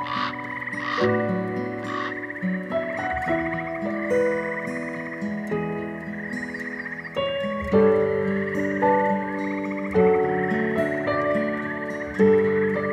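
A chorus of frogs trilling steadily, with three louder croaks about a second apart near the start, mixed with soft plucked-string music.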